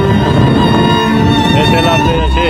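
Background music with a melody on bowed strings, violin-like, over held steady tones.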